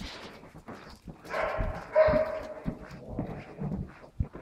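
A dog vocalising: one drawn-out pitched call of about a second, starting a little over a second in. Scattered footsteps on a hard floor run under it.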